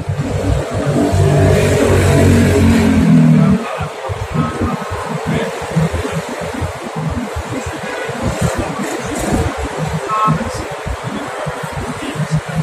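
A motor vehicle's engine in street traffic, rising in pitch as it pulls away; it is the loudest sound and stops abruptly about three and a half seconds in. After that, a lower, choppy rumble.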